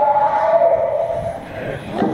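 A person's long, drawn-out shout, held on nearly one pitch for about a second and a half before fading.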